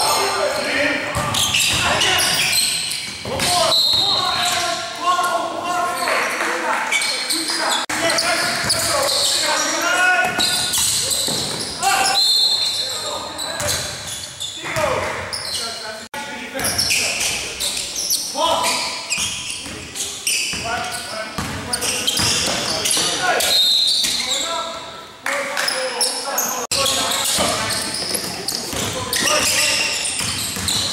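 Sounds of a basketball game in a gym: the ball bouncing on the hardwood floor, players' voices calling out, and brief high sneaker squeaks, all echoing in the hall.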